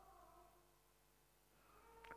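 Near silence: room tone with a faint hum.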